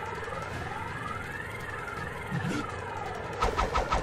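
Cartoon sound effect for a genjutsu illusion: several tones slide up and down, crossing one another, with a quick run of pulses near the end.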